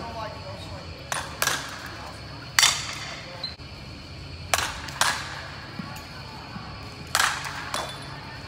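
Softball bats hitting balls in an indoor batting cage: about seven sharp, pinging cracks, several coming in close pairs, each ringing briefly in the large hall.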